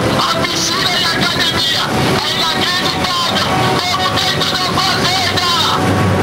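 Steady engine and wind noise of an aircraft in flight, heard from on board, with excited voices shouting over it.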